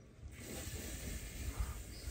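Steady outdoor background hiss that comes in about a third of a second in, over a low rumble, with no clear event standing out.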